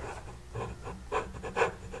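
A Fluke 17B+ digital multimeter being handled and set to DC volts: a few faint clicks and rubs of hand and plastic.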